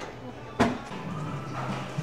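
A single sharp knock about half a second in, over a steady low background hum.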